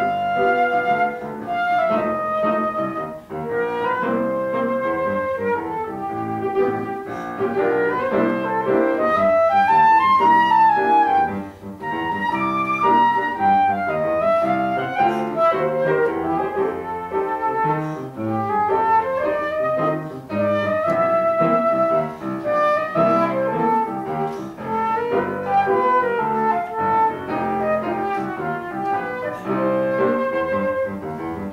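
Flute playing a melody over upright piano accompaniment.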